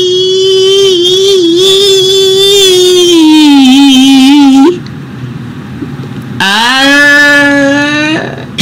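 A man singing loud, long held notes. The first note lasts about four and a half seconds, dips lower near its end and breaks off. After a short gap a second note slides up and is held.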